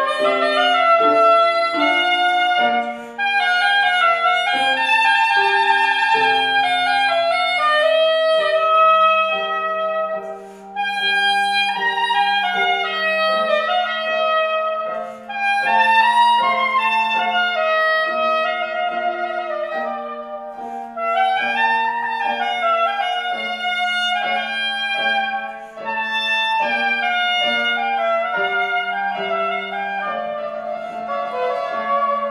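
Soprano saxophone playing a classical melody over piano accompaniment. The saxophone line moves in runs and held notes above sustained lower piano notes.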